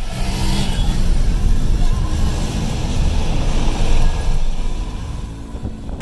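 Car driving: steady engine and road noise with a deep rumble, easing slightly near the end.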